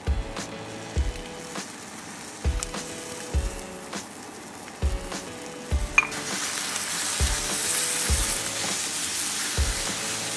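Eggs and diced ham frying in a nonstick skillet, the sizzle swelling louder about six seconds in, then being stirred with a spatula near the end. Background music with a steady beat plays throughout.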